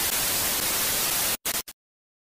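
TV static: a steady white-noise hiss that cuts off abruptly about one and a half seconds in, then stutters back twice very briefly.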